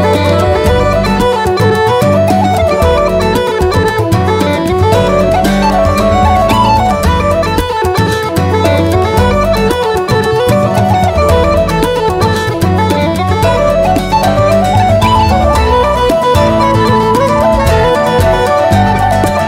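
Irish traditional band playing a fast instrumental tune: quick running melody lines, from uilleann pipes and whistles, over guitar chords and a bodhran beat, with no singing.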